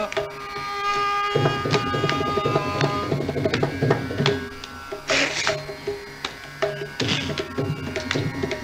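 Mridangam playing a rhythmic pattern of sharp strokes over deep resonant ones. A held melodic note sounds underneath for about the first second and a half.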